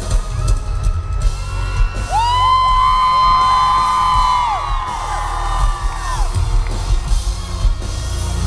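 Live rock band playing loud, with heavy drums and bass. From about two to six seconds in, audience members close by let out long high whoops that rise, hold and fall.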